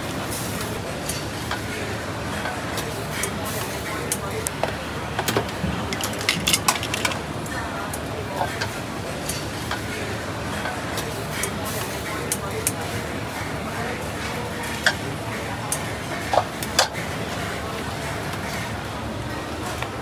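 Ladle and wire strainer clicking and clinking against steel pots and bowls as yong tau fu is ladled out, in many short sharp strokes over a steady background of hawker-centre chatter and noise.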